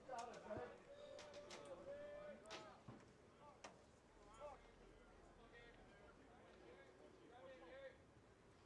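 Faint, distant shouts and chatter of players and spectators at a baseball field, with a few sharp pops in the first half.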